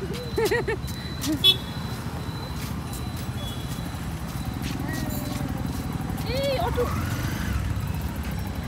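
Steady low rumble of outdoor urban background noise, with brief children's voices near the start and again about six seconds in, and a few light clicks of footsteps.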